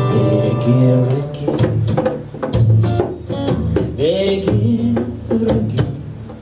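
Acoustic guitar strummed in a steady, choppy reggae rhythm, with a male voice singing over it.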